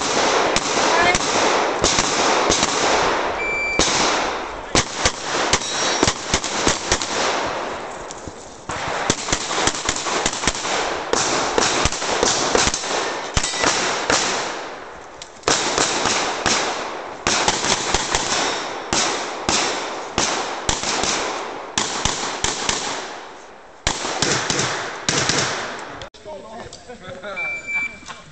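Handgun fire on a practical shooting course: quick strings of loud shots, often in close pairs, each ringing with echo. The strings stop for brief lulls about 8, 15 and 24 seconds in while the shooter moves between positions.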